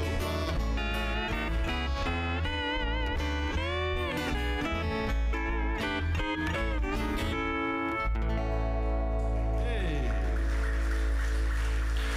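Live Hawaiian trio of lap steel guitar, acoustic guitar and electric bass playing, the steel guitar sliding and wavering between notes. About eight seconds in, the band settles on a long held final chord while the steel guitar glides downward.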